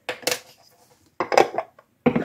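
A red plastic measuring spoon and small kitchen containers clattering against a glass mixing bowl and the countertop as salt is measured in, in two short clusters of clicks and knocks about a second apart.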